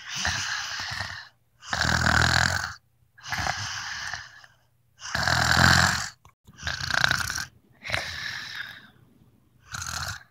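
A person doing exaggerated pretend snoring, a string of long breathy snores about a second each, drawn in and blown out in turn. The loudest, deepest snores come about two seconds in and again past the middle.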